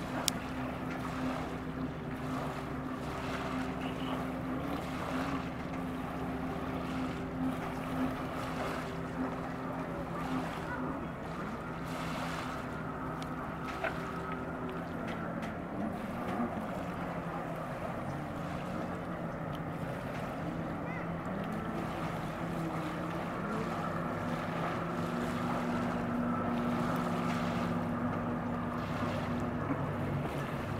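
Motorboat engines running on open water, a steady drone over wind noise on the microphone. The drone changes pitch about halfway through and grows louder near the end as another boat comes closer.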